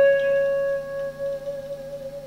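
A single sustained note on a Telecaster-style electric guitar, picked just before and left to ring at a steady pitch with no vibrato, slowly fading out near the end.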